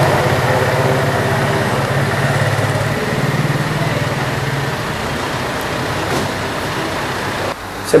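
A steady, low engine hum with a fast even throb, like a motor vehicle idling. It cuts off suddenly shortly before the end.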